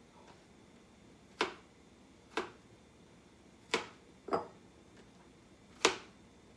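Kitchen knife knocking on a plastic cutting board as garlic cloves are cut: five sharp knocks at uneven gaps of about a second.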